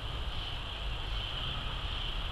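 Outdoor background: a steady, even high-pitched insect drone over a low rumble.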